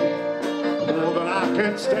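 A live soul band playing amplified music with guitar and a steady drum beat, and a singer's voice gliding in pitch through the PA.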